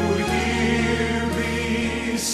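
Choir singing held chords over instrumental accompaniment with sustained low bass notes; the harmony shifts just after the start.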